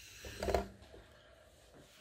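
Air rushing out of a balloon through the wide nozzle of a small balloon-powered car: a hiss that fades as the balloon empties, with a brief louder sound about half a second in.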